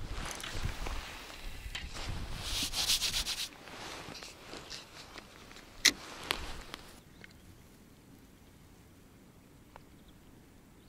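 Rustling and rubbing of a jacket and fishing tackle being handled at close range, with one sharp click about six seconds in; it goes much quieter after about seven seconds.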